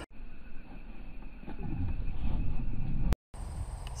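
Outdoor ambience in an open field: a low, uneven rumble of wind on the microphone. Near the end a sharp click and a brief dropout mark an edit in the recording.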